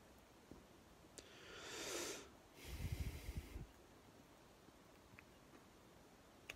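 A person breathing close to the microphone: a breath drawn in that swells for about a second, then a breath out of about a second that buffets the microphone. A few faint clicks otherwise.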